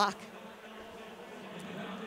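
A steady low buzzing hum over the faint background noise of a large hall.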